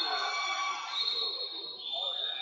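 Background murmur of people talking in a large sports hall, with a faint steady high-pitched tone.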